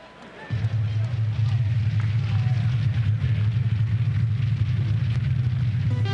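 Arena sound that comes up suddenly about half a second in: a loud, steady low rumble under a noisy crowd din, with faint voices in it.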